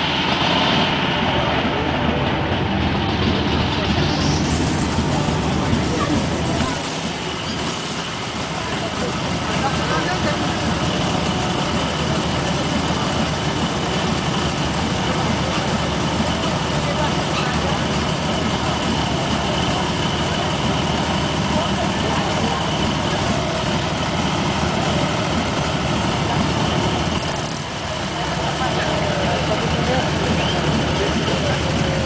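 Harley-Davidson WLA's 45-cubic-inch flathead V-twin running steadily at idle after being kick-started, with two brief dips in level partway through.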